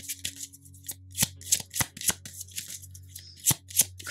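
Tarot cards being handled and shuffled: a dozen or so sharp, irregular card snaps and flicks.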